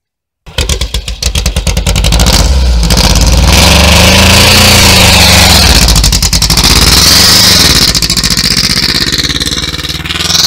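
Air-cooled flat-four engine of an off-road VW Beetle running loud, starting about half a second in; it revs up and down twice as the car moves off, then grows quieter near the end as the car drives away.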